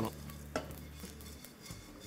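Wooden spatula stirring coriander seeds and dal as they dry-roast in a wok: a faint dry rustle and scrape, with one sharp tap about half a second in.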